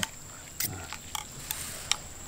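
Metal spoons clicking against ceramic soup bowls as the soup is stirred: three light clicks over a steady high thin whine.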